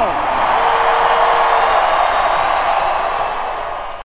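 Arena crowd cheering, a steady roar that eases off and fades out at the end.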